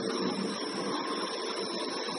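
Steady whirring noise with a faint, constant high whine, like a small electric motor running.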